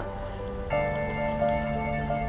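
Soft background music of sustained held notes, with a new chord coming in under a second in.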